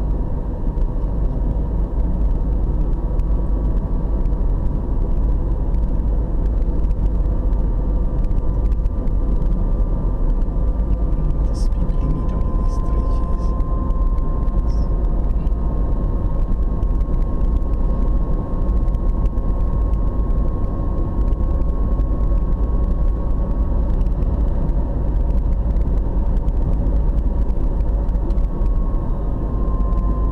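Steady engine and tyre rumble of a car driving at road speed, heard from inside the cabin, with a faint drifting hum over it. A few light ticks come about halfway through.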